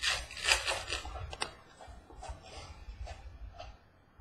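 Trading cards being flipped through by hand, the card stock sliding and rubbing against itself with a few quick flicks in the first second and a half, softer after.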